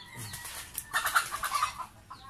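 Chickens clucking, with a run of quick, choppy clucks about a second in.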